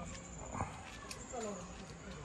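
A low voice murmuring in short, rising and falling sounds, with one sharp knock about half a second in.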